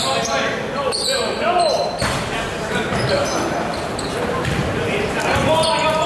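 Basketball game sound in an echoing gym: a ball bouncing on the hardwood court among indistinct players' voices.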